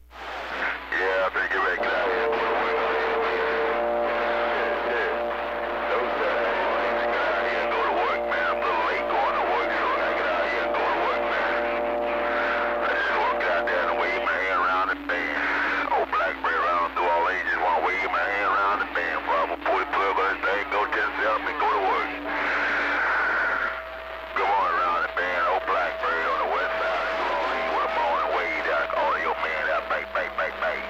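CB radio receiving distant stations through its speaker: garbled, unintelligible voices mixed with steady held tones and static.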